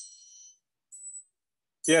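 A triangle made from a bent Singer sewing machine rod ringing after a beater strike, several high overtones at once, heard over a Zoom call and cutting off about half a second in; a second faint, brief ping comes about a second in. It sounds far more overtony than an Abel triangle, which is almost a pure bell.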